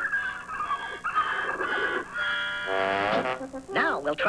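A cartoon horse's voiced laugh over orchestral cartoon music.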